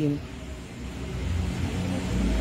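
A low background rumble with no clear pitch, swelling through the second half, after the tail of a spoken word at the start.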